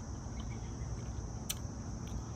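Crickets chirring steadily in one high continuous band over a low background rumble, with a single sharp click about one and a half seconds in.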